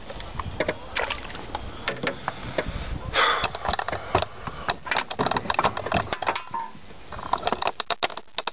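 Irregular clicks, knocks and rustles of gear and camera being handled close to the microphone, with a brief scraping rush about three seconds in.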